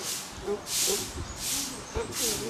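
A run of short, rhythmic hisses, about two a second.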